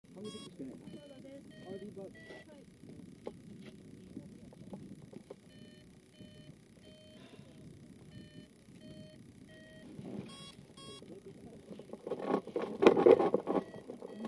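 Hang-glider variometer giving short, evenly pitched electronic beeps in little runs of two or three, on and off, over a low murmur. A louder rush of noise comes near the end.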